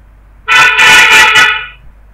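A loud horn-like honk, one pitched blast lasting a little over a second, starting abruptly about half a second in and trailing off.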